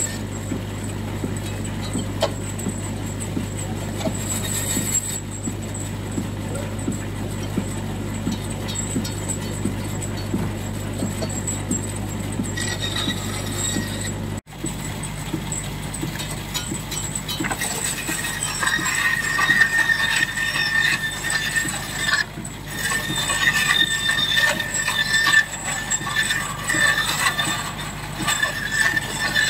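A Ruston Proctor 5 nhp portable steam engine running steadily. After a cut about halfway, a vintage cast-iron bandsaw driven by the engine's belt cuts timber, its blade giving a high squeal that comes and goes from a few seconds after the cut.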